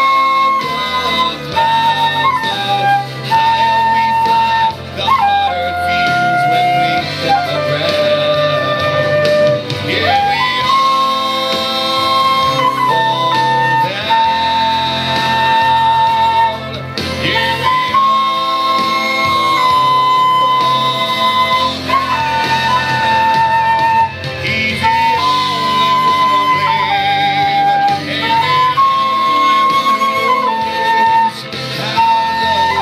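Silver concert flute playing a slow melody of long held notes that step down and climb back up, over a recorded backing track of the song.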